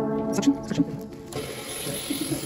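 Background music with held notes fades out over the first second or so. Then, about a second and a half in, the steady hiss of a surgical suction tip starts up, with a faint gurgle of fluid being drawn off.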